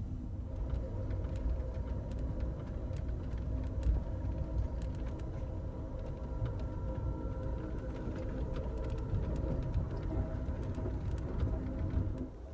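Steady low rumble of the Amtrak Empire Builder train running at speed, heard from inside the passenger car, with a faint steady hum and scattered light clicks.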